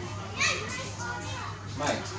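Baby long-tailed macaque crying out in two short, shrill calls, one about half a second in and one just before the end.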